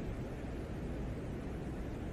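Venera 13 lander's microphone recording of wind on the surface of Venus: a steady low rushing noise with a faint hiss above it.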